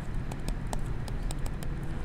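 Stylus tapping and scratching on a tablet screen as words are handwritten: a string of light, irregular clicks over low room noise.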